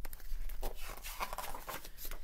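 Pages of a picture book being turned and handled: a run of soft papery rustles and small clicks.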